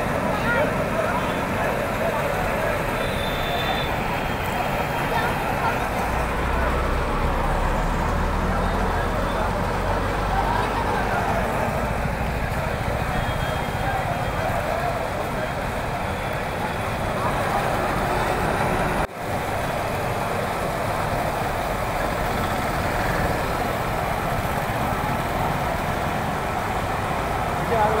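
Crowd of onlookers talking and shouting over steady street noise, with a low engine rumble for several seconds in the first half and a brief break in the sound about two-thirds of the way through.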